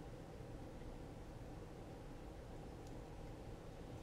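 Quiet room tone: a steady low hum under faint hiss, with nothing else happening.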